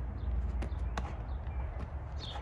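A handball, a handball shoe and a plush toy being juggled by hand: three short smacks as they are caught, the loudest about a second in, over a steady low rumble.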